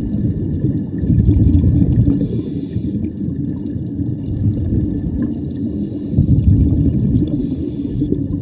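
Scuba diver breathing through a regulator underwater: a bubbling rumble of exhaled air, then a short hiss of inhalation, twice.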